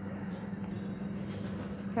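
A steady low hum over a faint even hiss, with no distinct event.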